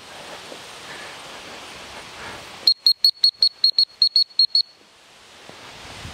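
Dog-training whistle blown in a rapid string of about a dozen short, high, shrill pips, about six a second, starting a little under three seconds in. It is a recall signal calling the dog back.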